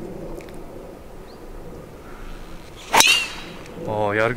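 Golf driver striking a ball off the tee: a single sharp crack about three seconds in, with a short high whistle falling away right after. It is a cleanly struck drive, called "perfect".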